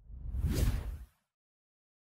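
A whoosh sound effect for an on-screen graphic transition, swelling up and fading out within about a second.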